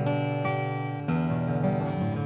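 Boucher SG-51 rosewood OM acoustic guitar being played: chord notes ringing out, with new notes struck about a second in. It has a dark tone.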